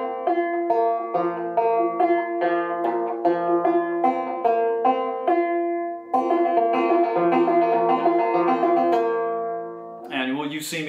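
An 1888 Luscomb five-string banjo, tuned about two frets below gCGCD, picked two-finger style in a drop-thumb rhythm. A steady run of plucked notes thickens into fuller ringing chords about six seconds in, then fades out near the end.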